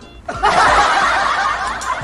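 Canned audience laughter, many voices laughing together, setting in about a third of a second in and loud.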